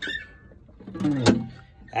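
Acoustic guitar strummed as the intro to a bluegrass song: one chord rings out at the start, and a second, louder strum follows about a second in.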